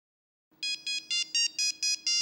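Mobile phone ringtone signalling an incoming call: a quick melody of short electronic beeps at changing pitches, about four notes a second, starting about half a second in.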